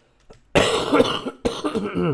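A man coughing twice, loudly, the first cough about half a second in and the second about a second later, ending in a voiced tail that falls in pitch.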